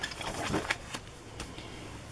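Pages of a spiral-bound paper smash book being turned by hand: faint paper handling with a few soft clicks.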